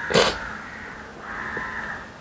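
A woman crying: a short, sharp sob just after the start, then a longer drawn-out cry in the second half.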